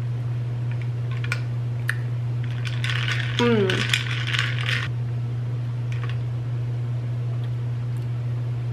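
A straw clinking and rattling against a drinking glass as an iced drink is sipped and stirred: a few single clinks, then a denser stretch of rattling about three seconds in that lasts nearly two seconds. A short falling hum of voice sits inside the rattling, under a steady low hum.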